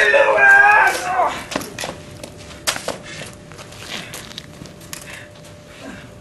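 A loud, high-pitched yell in the first second, then scattered footsteps, scuffling and a few sharp knocks from a staged fistfight on pavement and sand.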